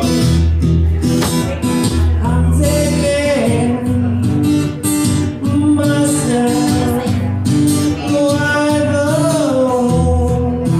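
A man singing with a strummed acoustic guitar, performed live, the voice holding long notes over steady chords.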